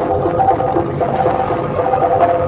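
Live gamelan music for a jaranan dance: a held melody line stepping from note to note over steady hand drumming.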